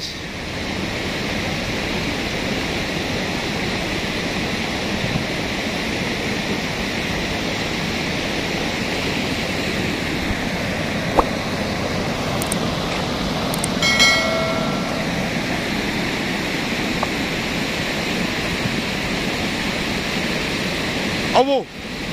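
Cold lahar mudflow from Mount Semeru rushing down a river channel: a steady, heavy rushing noise of muddy water and sediment. A little past the middle, a brief pitched tone sounds over it for about a second.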